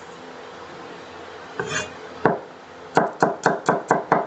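Cleaver cutting on a wooden chopping board as garlic cloves are sliced. After a quiet start there is a brief scrape, then a single knock a little after two seconds in, and from about three seconds in a quick run of cuts, about four to five a second.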